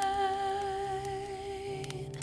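A single sung note held long with a slight vibrato over soft sustained chords, easing off a little toward the end, with a couple of faint fire crackles near the end.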